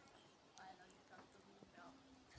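Near silence, with a few faint, short bird chirps in the distance.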